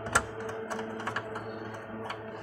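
Light clicks and taps of hands working screws and parts inside an opened Toshiba e-Studio photocopier, sharpest just after the start, with lighter clicks following. A steady hum runs underneath.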